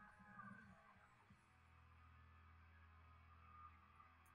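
Near silence: a faint steady low hum of room tone, with faint music dying away in the first second.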